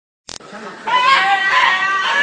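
A high-pitched human voice shouting and screaming, starting about a second in and staying loud. A short click comes just after the start.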